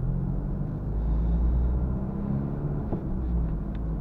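In-cabin sound of a 2013 Renault Clio IV with a 1.5 dCi four-cylinder turbodiesel, driving: a steady low engine drone mixed with road rumble.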